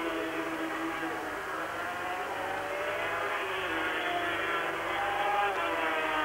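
Engines of 500cc Grand Prix racing motorcycles running at high revs through a corner. The engine note rises and falls in pitch as the riders work the throttle.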